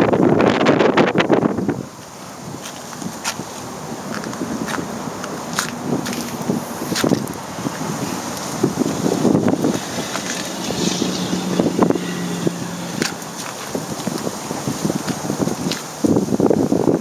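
Wind buffeting the microphone, heavy for the first two seconds and then lighter, with a few sharp clicks and faint low hums underneath.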